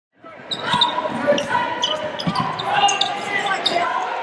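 Live sound of a basketball game in a gym: a ball bouncing on the hardwood amid the voices of players and spectators. It starts abruptly just after the opening.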